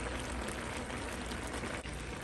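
Seafood and vegetable stir-fry sizzling and simmering in its sauce in a cast-iron wok, a steady hiss.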